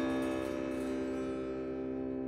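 Sparse background music: a single sustained note slowly fading away, with no new note struck.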